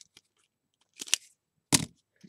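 Plastic Sizzix die case handled and closed in the hands: a short click-rustle about a second in and a sharper clack near the end.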